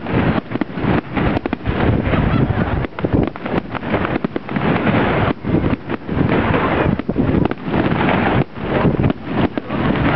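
Fireworks display: a rapid, near-continuous barrage of shells launching and bursting, the bangs overlapping with only a couple of brief lulls, heard through a small built-in camera microphone.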